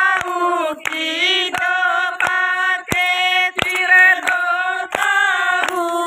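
Women singing a Haryanvi folk song (desi geet) in one melody line, kept in time by a sharp beat that falls about every two-thirds of a second.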